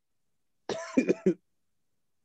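A man's short wordless throat sound, a rough burst under a second long with three quick catches near its end, like a throat-clearing cough.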